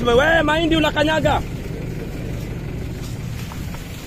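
A man's voice for about the first second and a half, then a steady low rumble with no words.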